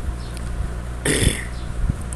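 A man's short, breathy throat sound about a second in, over a steady low hum.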